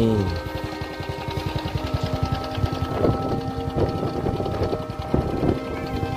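Background music with long held notes, over a fast, low pulsing underneath.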